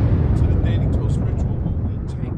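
Explosion sound effect dying away: a heavy low rumble that fades steadily, with scattered crackles over it.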